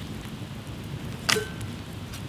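Wood campfire crackling and ticking, with one louder knock about two-thirds of the way in as a split log is set onto the fire.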